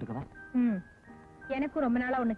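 Film dialogue: a woman speaking in short phrases over soft background music. In a pause about a second in, the music's held notes are heard alone.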